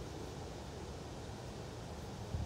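Steady, even outdoor background hiss with no distinct events and no club strike.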